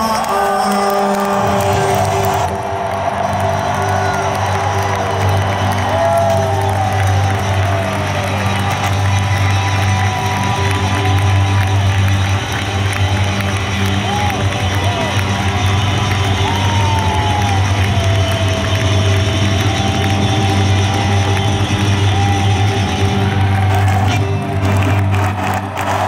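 Arena crowd cheering and whooping over a live band holding a steady low chord.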